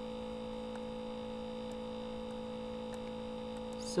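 Steady electrical hum, made of several constant tones with a low one and another an octave above it, with no other sound over it.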